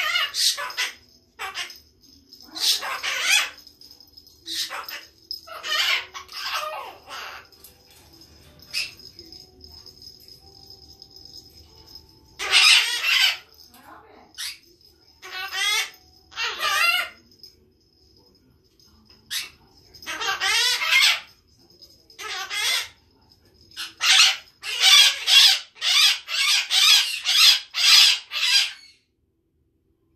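A green parrot vocalising on its own in irregular bursts of chatter and squawks, ending in a fast run of about ten loud calls.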